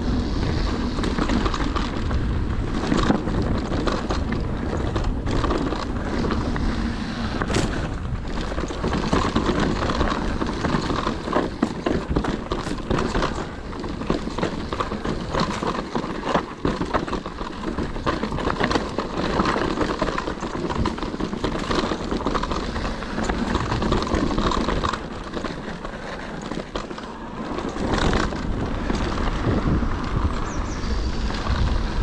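Trail-riding noise from a Cube Stereo Hybrid 140 TM electric mountain bike: tyres running over dirt and rock, with the frame and parts rattling and knocking over bumps, and wind buffeting the microphone. It goes on steadily, easing for a moment about halfway and again near the end.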